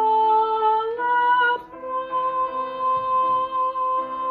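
A young woman's solo voice singing long held notes, stepping up to a slightly higher held note about a second in, over instrumental accompaniment.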